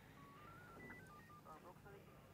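Near silence, with a run of very faint short high tones stepping up and down in pitch, about a dozen notes.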